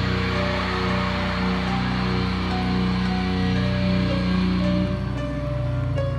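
Rock music with distorted electric guitar: heavy chords held and ringing, thinning out about five seconds in to softer, cleaner sustained notes.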